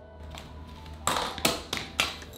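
Soft background music, then from about a second in four sharp metallic clanks and taps as the metal wand tubes of an old Electrolux canister vacuum cleaner are handled and fitted together.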